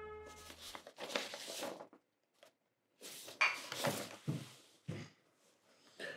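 Liquid poured from a glass bottle into a ceramic mug in a few separate gushes with silent gaps between them. A guitar chord fades out at the very start.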